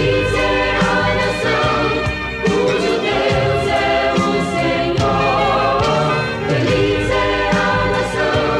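A woman sings a Portuguese gospel song lead, backed by choir voices and a full instrumental accompaniment with a steady beat.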